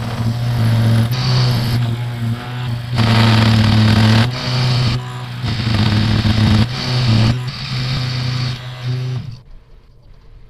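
Benchtop milling machine cutting a set-screw slot into a case-hardened steel shaft: the motor hums steadily while the cutting noise rises and falls as the cut is fed, the loudest stretch about three to four seconds in. The machine stops about nine seconds in.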